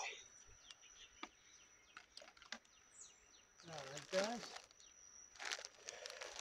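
Faint outdoor background: a steady, thin high-pitched tone runs throughout, with a few soft ticks and a short bird chirp about three seconds in.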